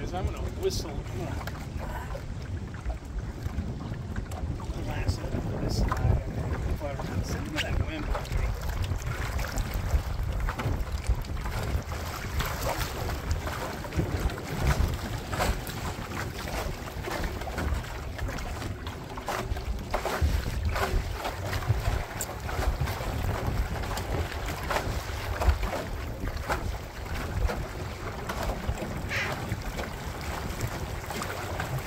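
Wind buffeting the microphone in a steady low rumble, with small choppy waves lapping and slapping against a small rowboat's hull in scattered short splashes.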